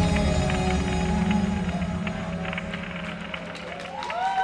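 Live electronic music fading out at the end of a song: sustained synthesizer tones over a heavy bass. The bass drops away about halfway through, and the remaining held tones die down.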